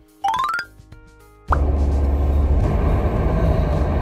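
A short rising electronic sound effect, a quick climbing run of tones. About a second and a half in, a sudden switch to the steady low rumble of road and engine noise inside a moving car's cabin.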